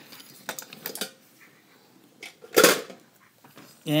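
Diecast metal toy trains clicking and knocking against each other and the table as they are moved along the row. There are a few light clicks in the first second, and one louder clack about two and a half seconds in.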